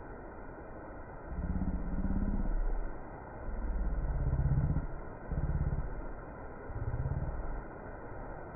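A motor vehicle engine running close by with a low, pitched note that comes in four surges, starting about a second in, the second surge the longest.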